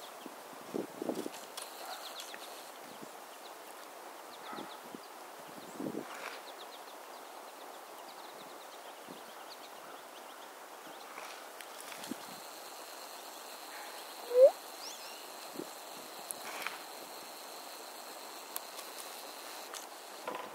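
Faint, scattered chirps of small songbirds in a quiet outdoor setting, with a few soft knocks and rustles. A little past the middle comes one short rising squeak, the loudest sound, and a faint steady high whine runs through the second half.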